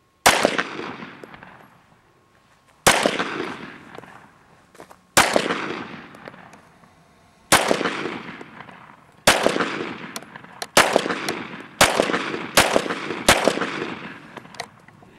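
Nine shots from a Glock 17 9 mm pistol, each with a long fading tail. They come about two seconds apart at first and faster near the end.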